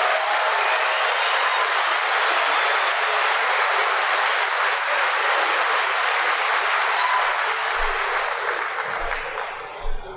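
Audience applauding steadily, dying down near the end.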